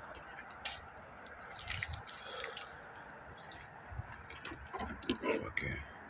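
Faint scattered scuffs and clicks of movement and handling, over a low background rumble.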